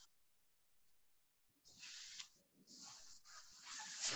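Faint rustling and knocking of a stringed instrument being picked up and handled, heard over a video call's audio. Near silence for the first second and a half, then intermittent handling noise that grows louder toward the end.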